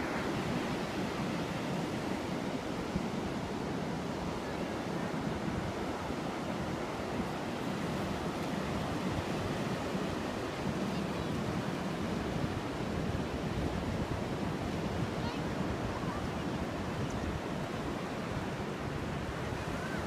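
Ocean surf breaking on a sandy beach, a steady wash of waves, with wind on the phone's microphone.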